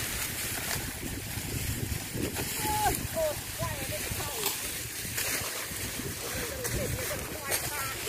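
Wind rumbling on the microphone, with faint distant voices calling a few times and a few sharp cracks.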